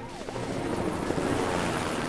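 Cartoon helicopter sound effect: a steady rushing rotor whir that swells slightly toward the middle.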